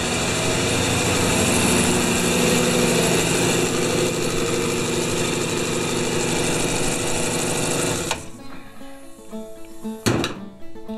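Belt-driven piston air compressor running loudly and steadily, then switched off about eight seconds in, its motor cutting out suddenly.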